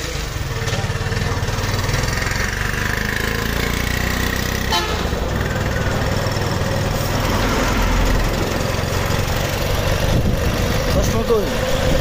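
Engine of a road vehicle running with a steady low rumble and road noise while riding through night traffic, with vehicle horns sounding now and then.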